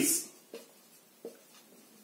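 Marker writing on a whiteboard: a couple of short, faint strokes.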